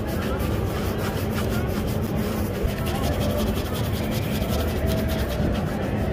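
Shoe brush scrubbing back and forth over a leather shoe in quick repeated strokes, against steady street background noise with distant voices.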